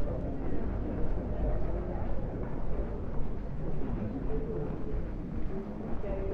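Outdoor street ambience: a steady low rumble with faint voices of people nearby.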